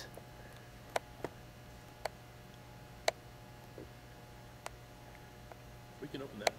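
Quiet room tone with a steady low hum, broken by a few sharp clicks about a second apart.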